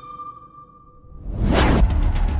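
News-channel logo sting: a ringing chime tone fades away, then a whoosh swells up about one and a half seconds in. Near the end it cuts to a louder, steady low rumble with scattered clicks.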